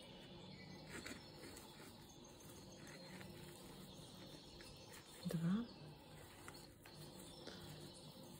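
Faint rustling and light ticks of a metal crochet hook working coarse jute twine, with a short murmured vocal sound about five seconds in.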